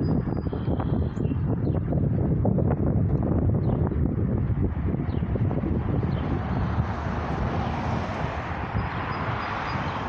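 Outdoor background noise: a steady low rumble with crackling, like wind buffeting the microphone, joined by a broad rushing noise that swells over the second half.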